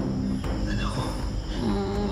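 Steady chirring of crickets over a low, sustained drone from a dramatic background score.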